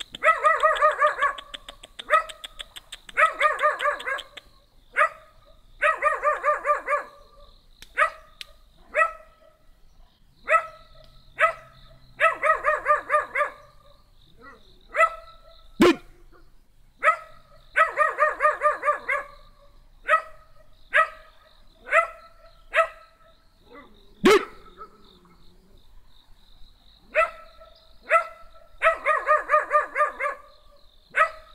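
A small dog barking repeatedly, high-pitched. Quick runs of several barks alternate with single barks throughout.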